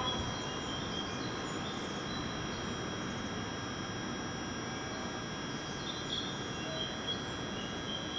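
Steady hum and hiss of a stationary JR West electric train at a station platform, with several constant high-pitched tones from its running equipment. A few faint short chirps come through now and then.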